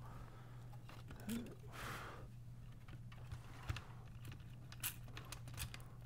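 Faint clicks and rustling of small plastic and metal parts being handled and fitted inside an opened stereo chassis, over a steady low hum.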